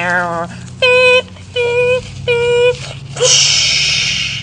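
Three short, steady beeps of the same pitch about two-thirds of a second apart, made by a voice imitating a missile's warning beeps, followed about three seconds in by a loud hissing rush lasting just over a second, like a mouthed launch sound.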